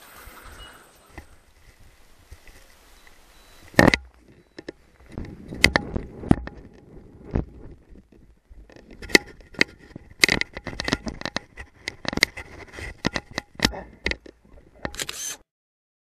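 Handling noise from a camera being carried and set up: irregular sharp clicks, knocks and scrapes, with a loud knock about four seconds in. A short hiss near the end, then the sound cuts off to silence.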